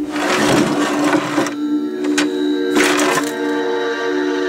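A wooden dresser drawer scraping open over the first second and a half, then a sharp click a little after two seconds and another short scrape near three seconds, over held droning notes of background music.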